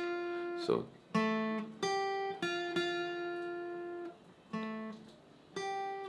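Steel-string acoustic guitar playing a slow single-note lead melody, each picked note left to ring out before the next, with a short silent gap a little past the middle.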